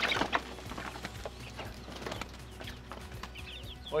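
Young chickens flapping and scrambling out of a coop onto a wooden ramp: a burst of wingbeats and claws on wood at the start, then fainter pattering and rustling as they move off.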